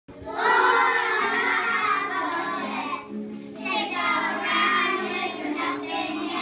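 A group of young children singing a song together, with a short break about three seconds in.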